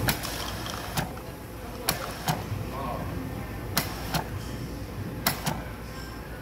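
Soda fountain pouring Chilsung Cider, a carbonated lemon-lime soda, into a plastic cup as a steady fizzing stream. Sharp clicks come every second or so, with voices in the background.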